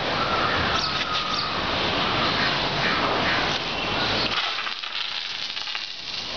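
Water jet from a hand-held fire hose nozzle, a steady rushing hiss of spray that eases off about four and a half seconds in.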